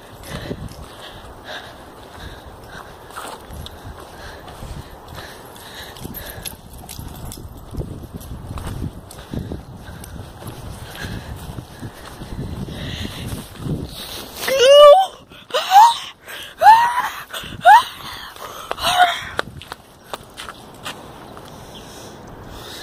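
Footsteps on grass and phone handling noise, then, about two-thirds of the way in, a quick run of five or six short cries that glide up and down in pitch, the loudest sounds here.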